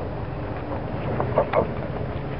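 Wildfire burning through cottonwood trees: a steady low rumble mixed with wind on the microphone, and a quick run of three sharp cracks or pops about a second and a half in.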